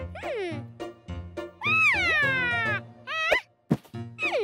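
High-pitched wordless cartoon vocal sounds that slide down in pitch, the longest one drawn out near the middle, over a children's music backing track with a steady low beat.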